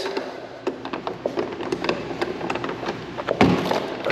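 Light clicks and taps of footsteps and handling while stepping through a doorway out onto a balcony, with one heavier thump about three and a half seconds in.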